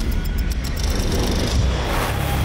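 Produced outro sting: a loud, deep rumbling swell with heavy bass and a few faint high clicks, leading into the closing music.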